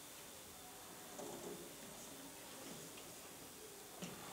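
Near-quiet room tone with a few faint, indistinct voices.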